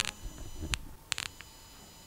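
Several sharp clicks and pops over a faint, steady high-pitched electrical whine. This is the 'on sound' that a USB-C headphone adapter on a Lenovo Duet Chromebook puts out, an unwanted noise shown as a fault of the adapter.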